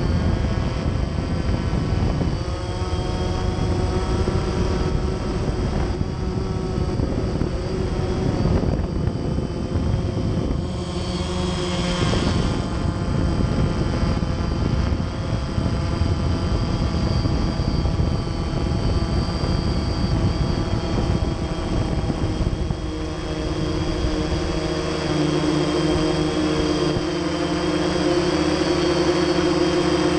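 A camera drone's electric motors and propellers hovering, heard close from the drone's own camera: a continuous hum of several pitched tones over a rushing noise, wavering slightly in pitch. About three-quarters of the way through, the low rumble drops away and a steadier, higher hum takes over.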